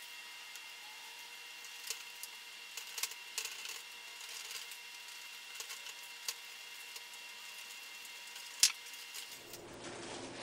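Faint scattered clicks and taps of a screwdriver working the screws of a foam RC plane's landing gear, with the loudest click near the end, over a steady thin high hum.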